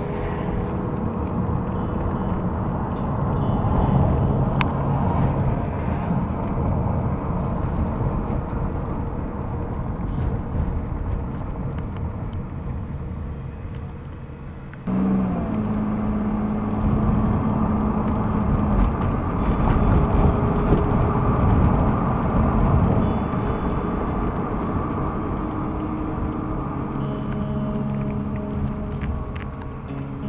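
Road and engine noise heard from inside a moving car, a steady low rumble with some held low tones. About halfway through the sound jumps abruptly louder as a new low tone comes in.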